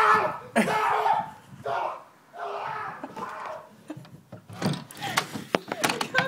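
A man yelling and crying out without clear words for the first three seconds or so, cries that a companion takes for pain. Then a quick run of sharp knocks and thumps near the end.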